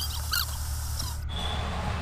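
A steady low hum, with a couple of short, high chirps about half a second in. The sound changes abruptly a little past one second, after which a faint thin high whine sits over the hum.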